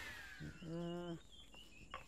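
A falling whoosh fades out at the start, then a short steady voiced grunt of under a second, like an indignant "hmm".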